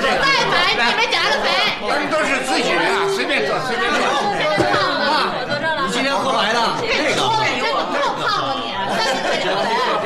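Several people talking over one another at once: lively, overlapping chatter.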